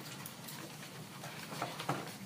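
Quiet room tone with a steady low hum and a few faint clicks, two slightly louder ones near the end.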